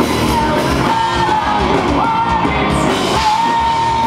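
Live hard rock band playing: distorted electric guitar, bass and drums, with a male singer's high vocal held over them. The singer or a guitar holds one long high note near the end.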